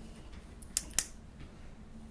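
Two sharp clicks about a quarter of a second apart, over a faint steady room hum.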